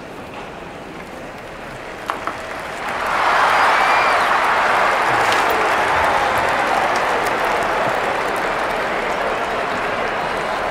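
Football crowd cheering and clapping in the stadium, rising sharply about three seconds in and holding, easing slightly toward the end.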